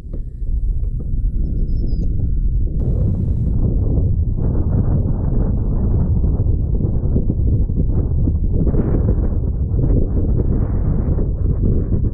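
Wind buffeting the camera microphone: a loud, steady, low rumble that never lets up.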